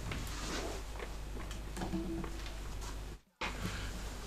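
Faint handling noise, light rustles and small knocks, as a twelve-string acoustic guitar is picked up and brought into playing position. The sound cuts out completely for a moment a little after three seconds in.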